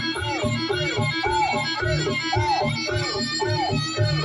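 Javanese jaranan dance music: a reedy melody repeats a short rising-and-falling phrase about twice a second over a steady beat of drums.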